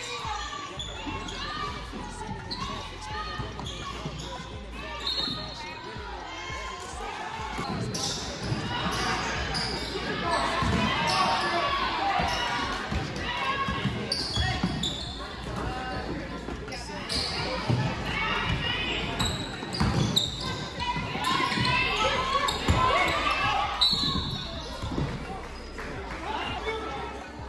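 Live gym sound of a basketball game: a ball bouncing on the hardwood court, with indistinct voices of spectators and players echoing in the large hall.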